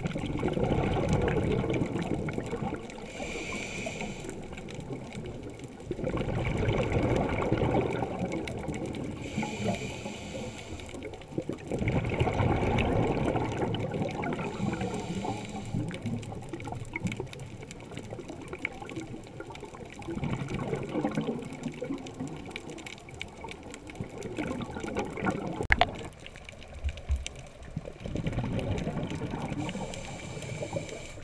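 Scuba diver breathing through a regulator underwater: a short hiss on each inhalation, then a longer rumble of exhaled bubbles, repeating about every six seconds. One sharp click a little before the end.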